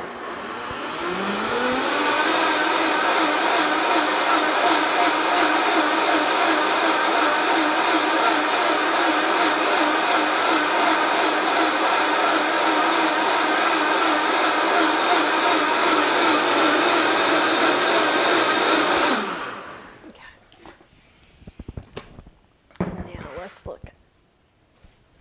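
Vitamix blender blending oats for oat milk: the motor starts and rises in pitch over about two seconds, runs steadily for about seventeen seconds, then winds down with a falling pitch. A few light knocks follow near the end.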